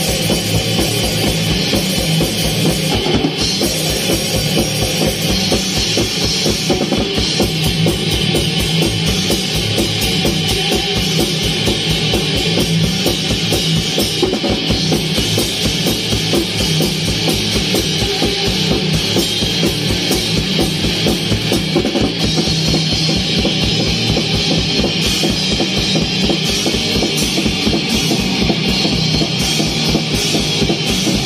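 D-beat hardcore punk played live by a guitar-and-drums duo: electric guitar over a fast, steady, driving drum-kit beat.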